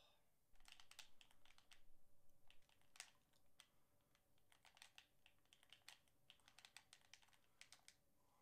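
Faint, irregular clicking of game-controller buttons and sticks, many small clicks, some in quick runs, in an otherwise near-silent room.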